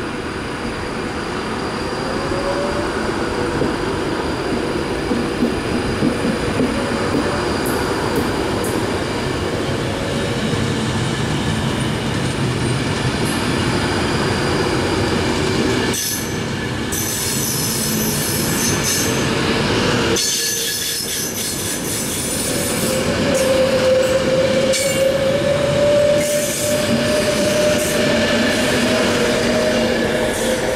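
Class 390 Pendolino electric train pulling away from a station and running past, its wheels running loudly on the rails. A whine rises in pitch as it gathers speed, most clearly in the second half.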